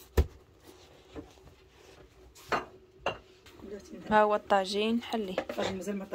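Kitchenware clinking in a few sharp knocks through the first three seconds, then a person's voice from about four seconds in.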